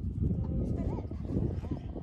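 A man's voice talking, unclear to the recogniser, over a dense low rumble of wind on the microphone.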